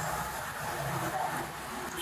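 Steady room noise with the soft rustle of paper book pages being turned by hand.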